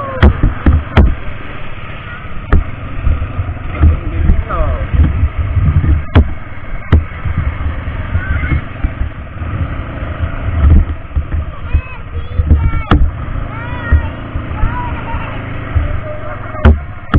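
ATV on the move over a rough, cracked dirt track: a low, uneven rumble of engine and wind buffeting the camera's microphone, broken by sharp knocks as the quad jolts over bumps.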